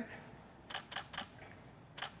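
DSLR camera shutter firing: a quick run of three or four clicks about a second in, and one more at the end.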